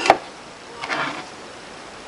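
Sharp knocks of kitchenware being handled on a tabletop right at the start, then a shorter, softer scrape about a second in.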